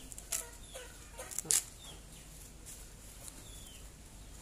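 Dry coconut husk fibre rustling and crackling in short, sharp bursts as it is torn and handled. A few brief bird calls are heard, one a short falling chirp near the end.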